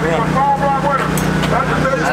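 People talking over a steady low mechanical hum.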